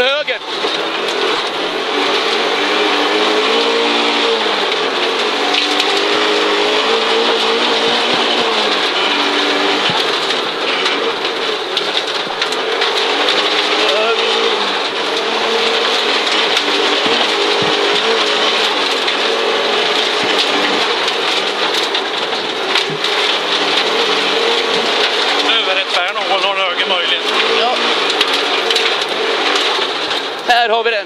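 Audi Quattro Group B's turbocharged five-cylinder engine heard from inside the cabin at stage pace, its revs rising and falling again and again through the gears, over a steady rush of tyre and road noise.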